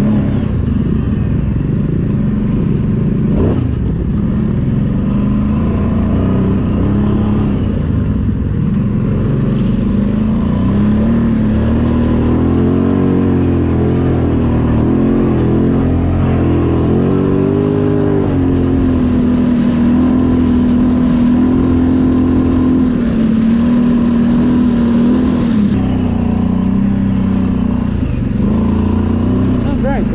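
Engine of an off-road vehicle heard from on board while riding, over a constant rush of noise; its pitch rises and falls several times with the throttle around the middle, then holds steady for several seconds.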